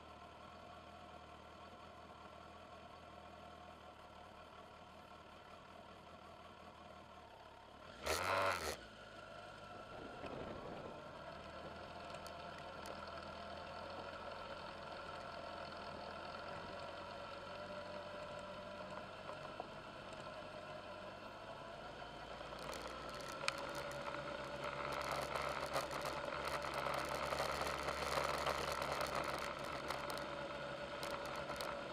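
A vehicle's engine runs steadily while it stands still, with a loud, brief burst of noise about eight seconds in. It then pulls away along a gravel road: the engine note rises slightly, and from about two-thirds of the way through, gravel crunching under the tyres and clattering rattles grow louder.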